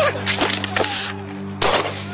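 Gunshots from a deputy's handgun picked up on a police body camera during a struggle: several loud, sharp bursts, the strongest about three-quarters of the way through.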